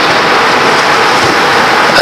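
A steady, loud hiss with no distinct events, ending abruptly as speech resumes.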